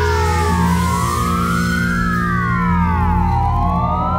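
Synthesizer playing layered, siren-like tones that sweep slowly up and down in pitch about every second or two, over a steady low drone.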